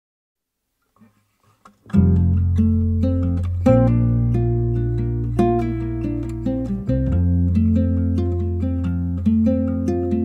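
Song intro on acoustic guitar: plucked notes over long held low notes, starting suddenly about two seconds in after near silence.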